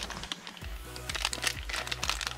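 Thin clear plastic parts bags crinkling and crackling in the hands as the sealed Beyblade parts are handled, with faint background music underneath.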